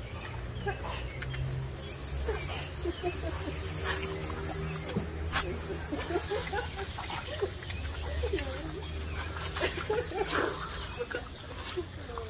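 Garden hose spray nozzle running steadily onto a man's face as he rinses out pepper spray, with short non-word vocal sounds from him throughout.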